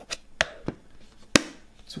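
Stiff black cardboard box being folded shut: a few light taps and knocks, then a sharper snap a little past the middle as the lid's magnetic catch closes.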